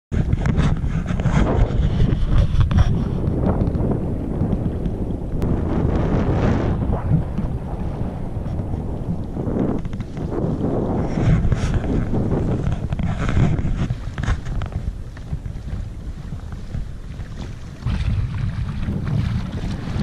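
Strong wind buffeting the microphone of a camera on a kayak at sea, a heavy rumble that swells in gusts, with choppy water splashing against the hull.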